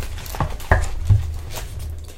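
Paper and book-handling noise: stiff picture-book pages rustling and a few short knocks as the open book is pressed flat on its wooden stand.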